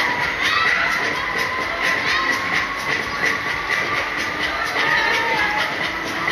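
Deca Dance spinning fairground ride in full swing: riders screaming over the ride's loud dance music, with a steady beat and long held high tones.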